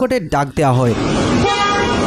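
Street noise with a car horn sounding once for under a second, about a second and a half in.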